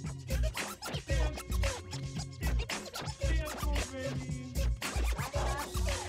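A DJ mix playing with a heavy, steady bass beat, overlaid with record-style scratching of a pitched sample.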